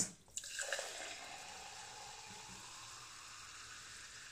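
Carbonated SodaStream cola poured into a glass and fizzing: a hiss that is strongest in the first second and then settles into a faint, steady fizz as the foam sits.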